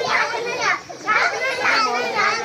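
Many children's voices overlapping, shouting and chattering at play.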